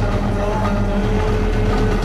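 Live metal band playing a loud, dense passage, a steady wall of sustained low tones over drums.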